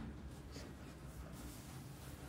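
Quiet room tone with a steady low hum, and one faint tick about half a second in.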